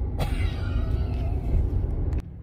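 Steady low road and engine rumble inside a moving car's cabin, with a short click about a fifth of a second in.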